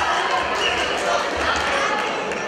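Several indistinct voices calling out across a large, echoing sports hall, with a few dull low thumps.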